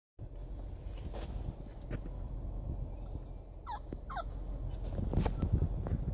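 A puppy whimpering twice, two short falling whines in quick succession partway through, over a low steady rumble inside a car. Low handling bumps near the end.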